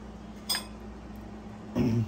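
A metal spoon clinks once against a ceramic bowl as cooked rice is scooped into it, a sharp click about half a second in, then a louder, duller knock just before the end, over a faint steady hum.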